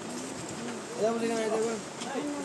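People's voices talking in a room, with a louder, drawn-out voice from about one to nearly two seconds in.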